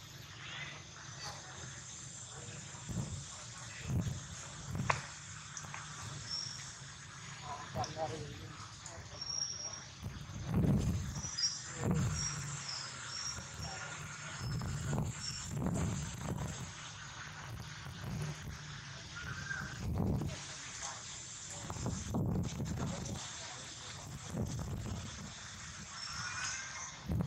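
Outdoor ambience: faint, indistinct voices of people some way off, with occasional bird chirps.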